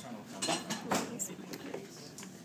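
Plastic parts of an anatomical larynx and bronchial-tree model clicking and clattering as they are handled, with several sharp clicks in the first half, the loudest about a second in.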